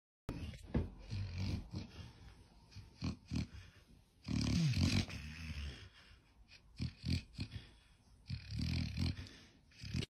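A dog asleep on its back making sleep noises with its breathing, a sound about every one and a half to two seconds, the longest with a falling pitch about halfway through.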